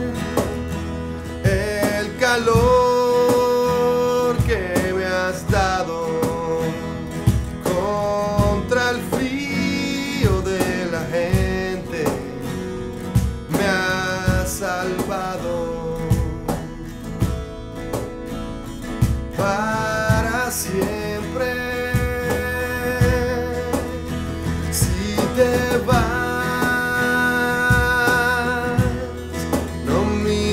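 Small acoustic band playing live: strummed steel-string acoustic guitar, electric guitar, electric bass and a cajón keeping a steady beat, with a male lead voice singing over it.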